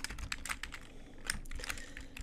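Typing on a computer keyboard: a quick, uneven run of key clicks as a short line of text is entered.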